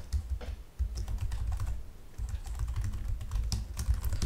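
Computer keyboard being typed on: an irregular run of key clicks as a line of code is entered.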